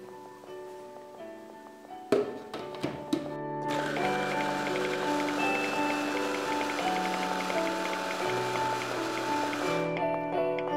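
Background music plays throughout. About two and three seconds in come a few sharp clicks, then a food processor runs from about four seconds, blending chickpeas into hummus, and stops abruptly near the end.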